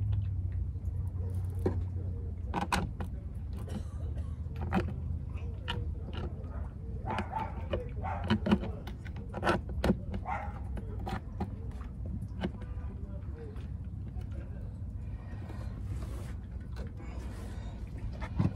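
Scattered light clicks and knocks of a marine compass being worked by hand into its mount in a wooden bulkhead, over a steady low hum.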